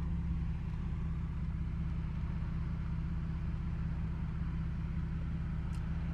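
Steady low hum of engine and road noise inside the cabin of a moving car.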